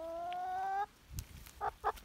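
A domestic hen gives one long call that rises slowly in pitch and stops abruptly just under a second in. A few short clucks follow near the end.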